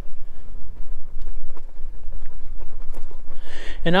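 Wind buffeting and riding rumble on a chest-mounted action camera's microphone as an e-bike rolls over rough, sandy ground, with a few faint knocks.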